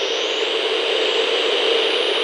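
Intro sound effect: a loud, steady rushing noise much like a jet engine.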